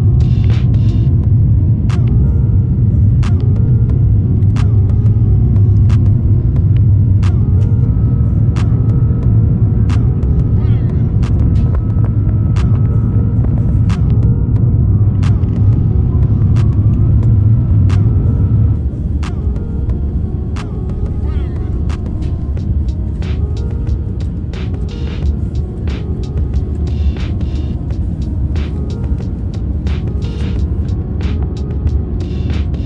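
Airliner cabin noise on the approach to landing: a steady low engine and airflow rumble that drops in level about two-thirds of the way through. Background music with a steady beat of about one tick a second plays over it.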